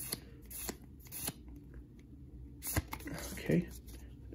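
Pokémon trading cards being flipped and slid against one another in the hand, with a few soft card snaps and ticks.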